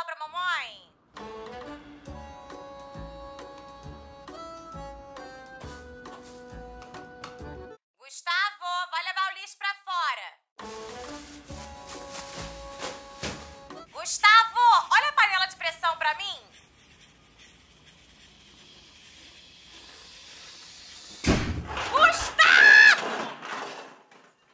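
Birds chirping in short trilling bursts, alternating with a light melody of plucked notes over a bass line. Near the end, a sudden thump and a loud wavering cry.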